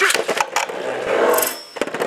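Two Metal Fight Beyblade spinning tops are launched into a plastic stadium and spin and collide. Rapid irregular clacks of metal wheels striking each other run over the scrape of the tips on the stadium floor.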